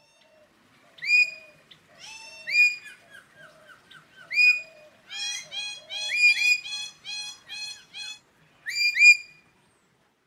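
Bird calls: short whistled chirps that swoop sharply up and hold, coming singly and then in quick overlapping runs, with softer, lower chirps beneath.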